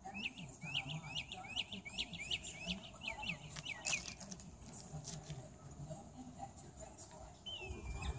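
A songbird chirping: a quick series of short, high chirps, about four a second, for the first three and a half seconds, then one longer slurred falling note near the end. Two sharp clicks fall between them.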